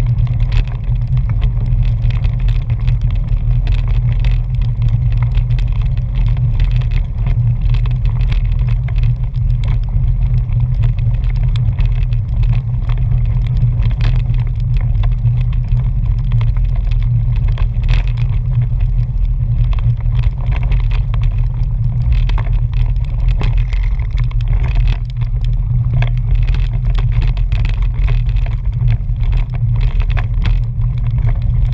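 Steady, loud low rumble of wind and road noise on a camera moving with a mountain bike along a dirt road, with frequent small ticks and crackles from the knobby tyres rolling over grit and gravel.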